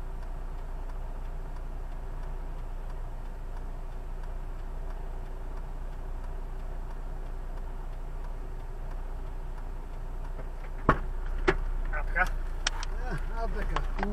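Steady low hum of a car's idling engine heard from inside the stopped car's cabin. Near the end come two sharp clicks, followed by a run of smaller clicks and knocks.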